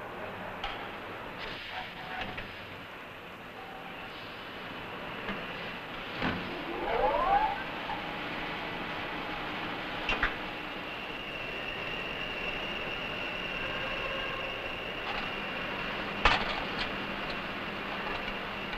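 Steady mechanical running noise of a rotor balancing machine. A rising whine comes about seven seconds in, and a high steady tone holds through the second half, with a few sharp clicks.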